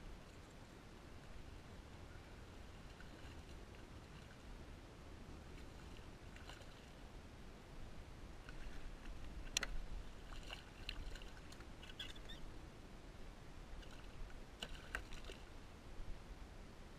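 A hooked fish splashing and thrashing at the surface beside a kayak as it is drawn in by hand, a few sharp splashes in the second half, the sharpest about ten seconds in, over faint wind rumble.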